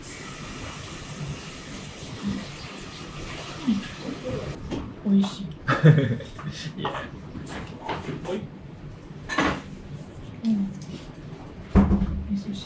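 A steady hiss for the first four and a half seconds, then a woman's short laugh, scattered clicks of tableware, and a solid knock near the end as a lacquered soup bowl is handled.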